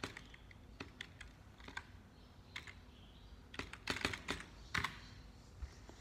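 Quiet keystrokes on a computer keyboard as a login password is typed: a few scattered key clicks, then a quick run of them about four seconds in.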